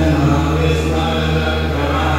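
Male voice chanting Hindu mantras in long, held tones over a steady low drone.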